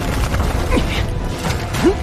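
Sound effects of an animated fight: a steady low rumble with mechanical clicking and creaking, over background music, with a short louder accent near the end.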